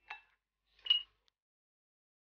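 A spoon clinking twice against a glass mixing bowl of flour, a faint tap at the start and a louder clink just under a second later that rings briefly.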